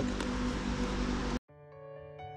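Outdoor background noise with a faint steady hum cuts off abruptly about one and a half seconds in. Gentle background music with long held notes then fades in.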